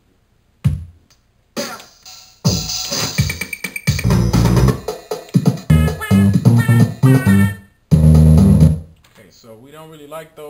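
Drum-machine and synth loops auditioned one after another in a DAW's loop browser. After a couple of lone hits, beats with keyboard and synth notes start and stop abruptly as each clip is previewed.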